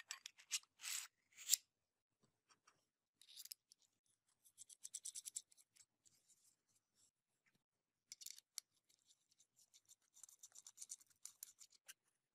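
Aluminium-and-steel pocket hole jig being handled, its metal parts slid and fitted together. The sound comes as short spells of faint, fast metallic clicking and scraping, the loudest in the first second and a half, with near silence between them.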